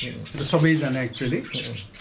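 A man talking, with caged birds squawking and chirping in the background.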